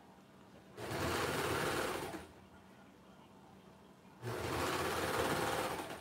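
Baby Lock Imagine overlock machine (serger) running in two short runs of about a second and a half each, with a pause between, stitching trim onto an orange knit t-shirt.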